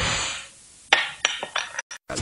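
A glass cola bottle being opened with a bottle opener: a short hiss of escaping carbonation that fades within half a second, then a few sharp metallic clinks from about a second in.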